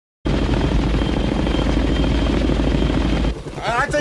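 Tandem-rotor military helicopter in flight, a loud low rumble with a rapid, regular rotor chop and a faint steady high whine above it. It starts abruptly a moment in and cuts off about three seconds later, as a quieter cabin sound and a woman's voice take over.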